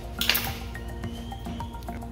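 Background music throughout, with one short, sharp scrape of a kitchen knife on the tiled counter about a quarter second in as dough is cut into pieces.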